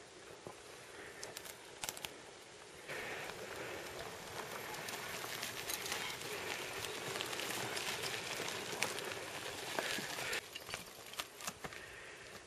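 Mountain bike tyres crunching and crackling over a stony dirt track as riders roll past, with scattered sharp clicks of stones and gravel. It is louder for several seconds in the middle and drops off abruptly about ten seconds in.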